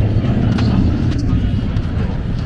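A motor vehicle's engine running close by, a low steady drone that eases off near the end.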